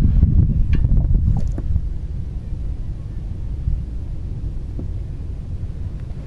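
Wind buffeting the microphone: a steady low rumble that eases after about two seconds, with a few faint clicks.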